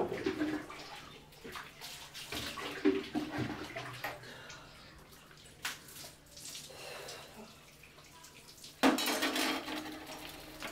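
Water splashing and being poured, as someone washes, with scattered small knocks of metal vessels; a louder rush of water comes about nine seconds in.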